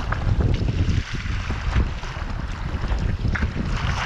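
Strong wind buffeting the microphone, with choppy water splashing and slapping around a sea kayak as it is paddled through rough seas in a 25-knot wind.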